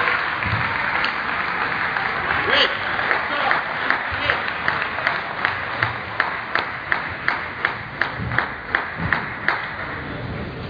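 Spectators clapping in unison, a steady beat of about three claps a second that starts about four seconds in and stops shortly before the end, over the chatter of a hall crowd.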